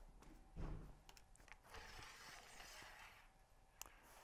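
Mostly near silence with faint handling sounds: a soft low thump about half a second in, a few small clicks, and a brief rustle in the middle as a metal C-stand is taken hold of.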